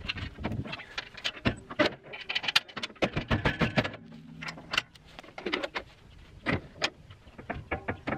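Irregular metallic clicks, clanks and rattles of hand-worked hardware at a tractor's rear hitch and winch, as parts are handled and unfastened.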